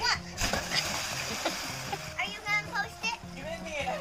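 A person plunging into a swimming pool off an inflatable float: a splash about half a second in and rushing water noise for over a second, followed by voices.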